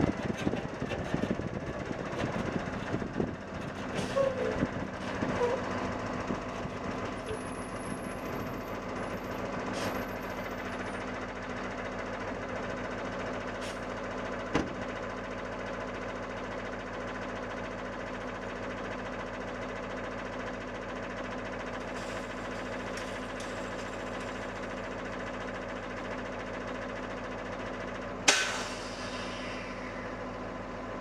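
Vehicle engine running steadily, uneven for the first few seconds and then settling to an even idle. A few sharp knocks cut through, the loudest near the end.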